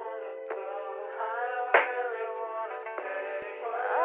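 Hip-hop backing music: a sustained synth chord under a wavering auto-tuned vocal melody, punctuated by a few sharp hits about a second apart.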